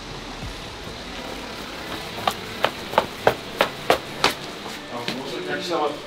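A quick, even run of seven sharp clicks, about three a second, over low room noise.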